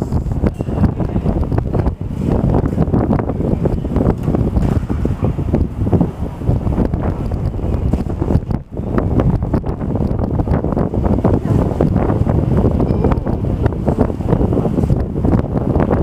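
Wind buffeting the camera's microphone: a loud, low, gusty noise with a brief drop-out a little past halfway.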